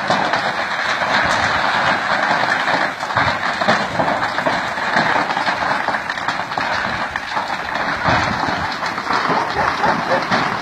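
Large building fire burning close by: a steady, dense rushing noise full of fine crackles.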